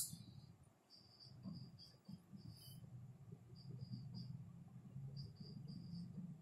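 Faint cricket chirping: short high chirps in irregular groups of two to four, going on steadily in the background.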